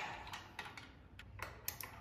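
Faint, irregular light clicks and taps of metal hardware as a strap's snap hook is handled and clipped at a Pilates reformer's spring-bar fittings.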